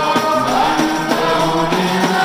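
Men singing a Maulid chant in chorus into microphones, accompanied by a steady beat on hand-held frame drums.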